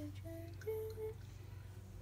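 A person humming a few short, steady notes, the last two on the same pitch, over a faint steady low hum.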